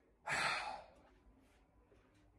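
A young man's single sigh: one short, breathy exhale of about half a second, soon after the start.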